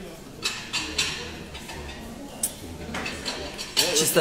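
A quiet, indistinct voice with several short, soft clicks and rustles close to the microphone.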